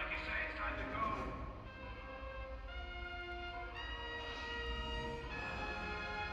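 An orchestra with strings and brass playing slow, held chords that shift about once a second. A man's voice from the film dialogue sounds over the music in the first second or so.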